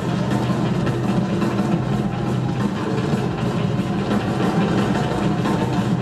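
Rock drum kit played live in a drum solo: a dense, continuous run of rapid strokes on drums and cymbals, with a heavy low end.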